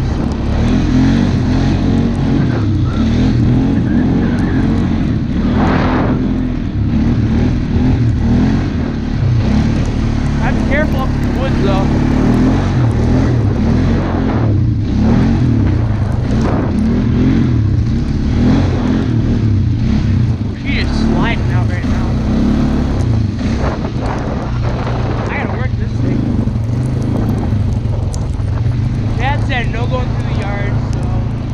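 ATV (four-wheeler) engine running under throttle while being ridden over snow, heard from the rider's helmet camera. Its pitch rises and falls as the throttle changes.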